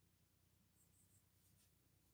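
Near silence: faint room tone, with a few very faint short scratchy rubbing sounds about a second in and again shortly after.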